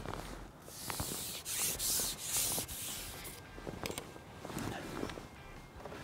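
A carbon fishing pole sliding back over a roller and through the angler's hands as he ships it back while playing a hooked fish. It gives a run of short rubbing hisses through the first three seconds or so, then a few faint clicks.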